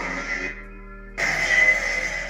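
Crystal Focus X lightsaber sound board playing its sound font: a steady electronic hum. The upper part of the hum thins out about half a second in, then a louder hissing swell comes in just after a second.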